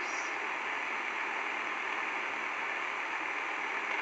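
Steady background hiss with no speech, even and unchanging.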